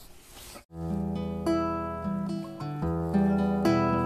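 Acoustic guitar playing the chords of a song's instrumental opening, starting suddenly about a second in after a brief faint hiss.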